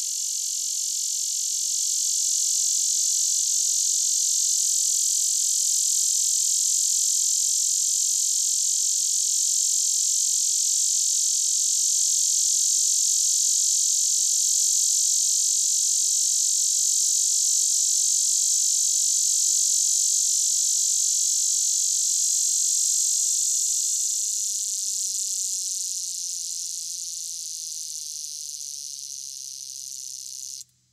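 Male lyric cicada (Neotibicen lyricen) singing one long, high-pitched buzz that does not pulsate. It swells over the first couple of seconds, holds steady, and fades over the last several seconds.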